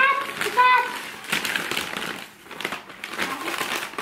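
Plastic bag crinkling and rustling as a hand rummages through its contents, after a brief voice in the first second.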